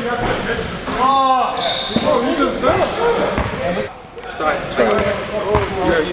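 Several players' voices talking and calling out over each other in an echoing gym, with a few sharp thuds of a basketball bouncing on the hardwood floor.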